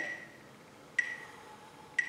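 Metronome ticking once a second, each click carrying a short ringing beep, beating the count for a four-count timed breath.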